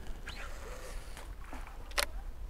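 Faint rustling and small clicks from a caught pike and its lure being handled, with one sharp click near the end, over a low steady rumble.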